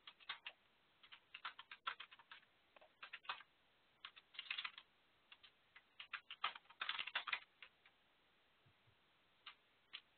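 Faint typing on a computer keyboard: irregular runs of short key clicks with pauses between them, thinning out near the end.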